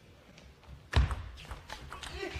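Table tennis point under way: a loud knock about a second in as the point starts, then a run of sharp clicks of the plastic ball striking the rackets and bouncing on the table.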